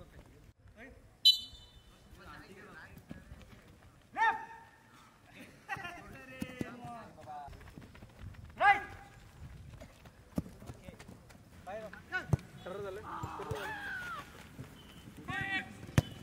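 Footballers and coaches shouting short calls across a training pitch during drills, several loud and high, with a few sharp knocks of a football being struck and footfalls on the grass.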